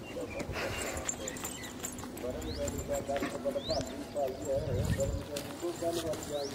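A person's voice in drawn-out, wavering tones, with a few short rising bird chirps.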